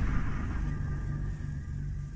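Tail of a logo intro sting: a low drone with faint high tones, steadily dying away.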